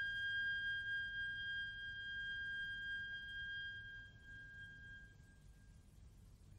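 A single high orchestral note left ringing alone at the close of a slow movement, fading away slowly over about five seconds, over the faint low hum of an old radio recording.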